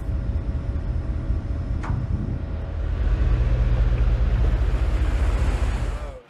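Wind buffeting the microphone on the open deck of an Independence-class littoral combat ship under way at sea, with the rush of the sea beneath it. It is a steady, deep rumble that grows a little louder about three seconds in, with one brief tick about two seconds in.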